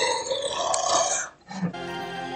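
A deep, growly, distorted voice trails off. After a brief silence, soft sustained background music begins near the end.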